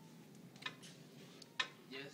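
Two sharp clicks about a second apart over faint room noise.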